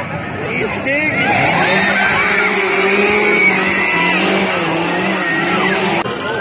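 Several chainsaws running and revving up and down at once, louder from about a second in.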